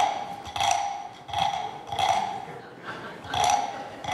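Wooden frog guiro scraped with its stick, giving about five short ratchety croaks roughly two-thirds of a second apart, with a pause before the last one.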